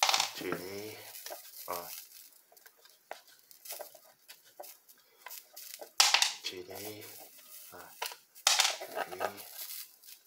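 A person's voice, without clear words, heard three times in short stretches, mixed with sharp clicks and brief hissing noises, loudest at the start and about six seconds in.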